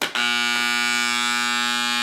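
Modified microwave oven transformer buzzing loudly from the moment it is plugged in: a steady, rich mains hum. The loose, unglued laminations of its core rattle against each other and make it very noisy.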